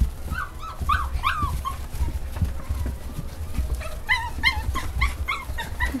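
English Cocker Spaniel puppies whining and yipping: a few short rising-and-falling whines in the first two seconds, then a quick run of short high yips near the end, over a low rumble.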